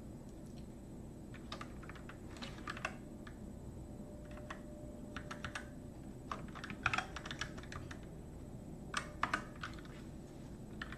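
Computer keyboard being typed on in short bursts of a few keystrokes with pauses between, the loudest bursts near the end, over a steady low background hum.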